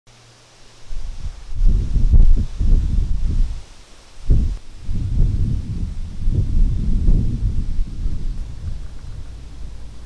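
Wind gusting across an open grass meadow and buffeting the microphone with loud, irregular low gusts. It picks up about a second in, eases briefly around four seconds, then gusts again.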